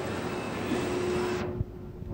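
Steady hum and hiss of a running escalator, with a faint steady tone under it. The hiss drops away suddenly about a second and a half in, followed by a soft low thump.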